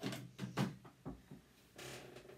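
Objects being handled and set down: several light knocks in the first second or so, then a short rustling scrape near the end.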